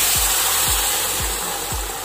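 Boiled dal poured into hot desi ghee tempering (tadka) in a kadhai, hitting the hot fat with a loud, dense sizzle that slowly eases. This kind of sound when the tadka meets the dal is called essential: the sign that the ghee is hot enough.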